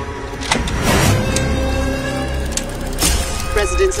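Sampled sound-effect intro of a hardcore track played over a DJ set: vehicle sounds and a few sharp hits over a steady low rumble, a movie-style crime-scene soundscape that runs into a spoken news sample.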